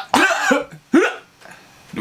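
A man's voice in three or four short bursts close together during the first second or so, cough-like rather than words, then a short quiet pause.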